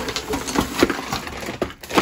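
A woven plastic shopping bag tipped out onto a wooden floor: loud plastic rustling with a clatter of small objects knocking and tumbling onto the boards, with a heavier knock near the end.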